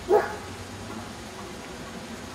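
A dog barks once, a single short bark just after the start, over quiet open-air background.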